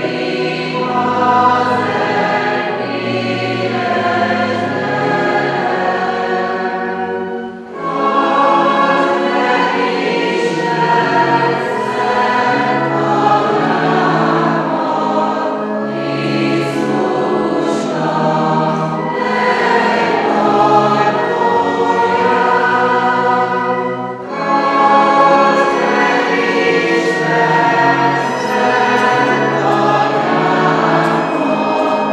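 Church congregation singing a hymn together, many voices holding long sung phrases, with a brief pause about eight seconds in and another about 24 seconds in.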